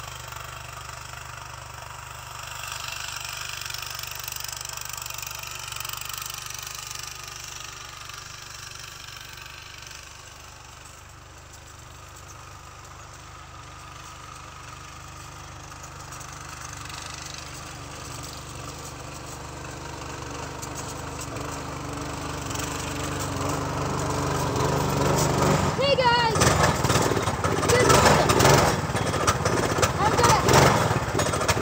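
Go-kart engine running as the kart drives closer, getting steadily louder through the second half and loudest near the end.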